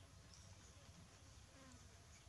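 Near silence: faint background hiss with a low hum.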